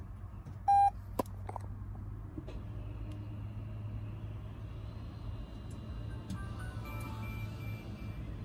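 A single short electronic beep about a second in, the start-up chime of a Toyota Corolla Cross hybrid as its power button is pressed with the foot on the brake, over a steady low hum in the cabin. Fainter high tones follow later as the system comes to Ready.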